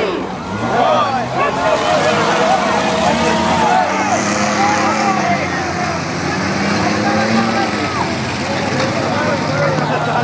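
Grandstand crowd yelling and cheering over the engines of derby vehicles towing campers and RVs around the track, the engines running steadily underneath.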